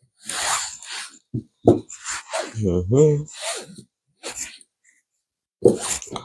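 A man's voice murmuring a few indistinct words, with breaths and short rustling noises between them.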